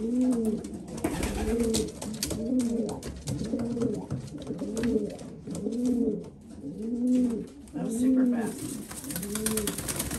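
Homing pigeon cooing over and over in a steady run of low, rising-and-falling coos, one about every 0.7 seconds. This is the courtship cooing of a cock to the hen he has just been paired with.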